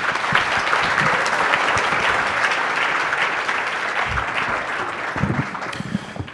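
Audience applauding, thinning out near the end.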